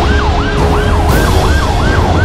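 Emergency vehicle siren in a fast yelp, each wail sweeping down in pitch and snapping back up about three times a second, over a steady low rumble.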